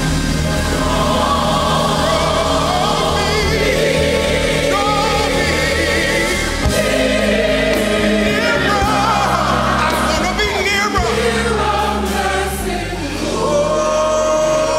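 Gospel choir singing with instrumental accompaniment and sustained bass notes underneath. Near the end a long held note rises slowly.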